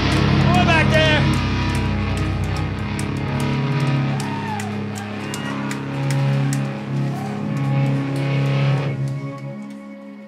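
A live post-hardcore band plays a loud ending of distorted electric guitars and held chords. The bass drops out about a third of the way in, and the music dies away near the end.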